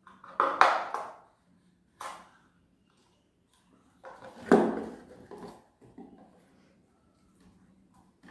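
Handling sounds of a paper cup and a cardboard shoebox: a few separate knocks and rustles as a hole is pushed into the cup with a pen and the cup and box are moved. The loudest come about half a second in and about four and a half seconds in.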